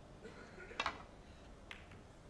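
Snooker shot: a sharp double click just under a second in as the cue strikes the cue ball and a ball is hit, then a lighter click of ball on ball or cushion a little later.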